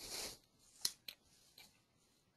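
Faint handling noise: a short rustle, then two sharp clicks about a quarter second apart and a fainter one after.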